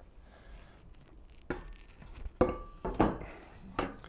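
A wooden board knocking as it is handled and set in place on a bench frame: several sharp knocks in the second half, some with a brief ring.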